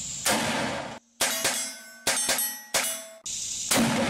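About five gunshots, roughly a second apart, several of them followed by the clang and ring of struck steel plate targets.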